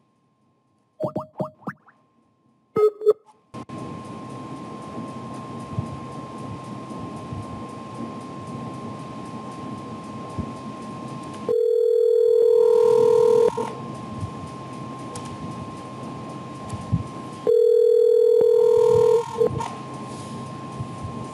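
Skype call to a phone number going out: a few short electronic blips as the call starts, then line hiss and the telephone ringback tone, two rings about two seconds long, six seconds apart start to start, the North American ringing cadence.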